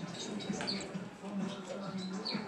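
Newborn rat pups squeaking: short, high-pitched squeaks that fall in pitch, several a second, over a steady low hum.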